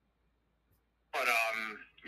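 Near silence for about a second, then a man's voice briefly speaking a short phrase.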